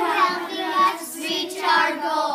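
A group of children singing together in unison, holding one long note.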